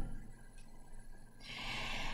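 A quiet pause, then an audible breath drawn in through the mouth or nose during the second half, a soft hiss lasting under a second.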